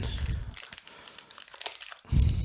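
Foil wrapper of a Pokémon 151 booster pack crinkling in the hands as the opened pack is worked and the cards are slid out: a run of quick, irregular crackles.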